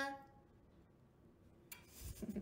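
The last held note of a sung Quran recitation fades out right at the start, then near silence with a faint click near the end.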